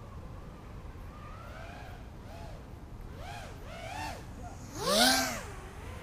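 Racing quadcopter's motors whining, the pitch swinging up and down with the throttle, growing louder and passing close about five seconds in.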